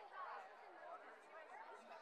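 Faint chatter of a crowd, several voices talking at once with no single clear speaker.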